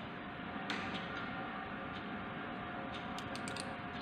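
Micrometer ratchet knob turned by hand to close the spindle onto the anvil at the zero position: a few sparse faint clicks, then a quick run of ratchet clicks about three seconds in, over a steady hiss.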